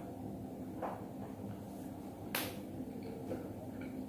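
Steady low room hum with two brief soft noises, about one second and two and a half seconds in, as a fork is worked through noodles on a plate.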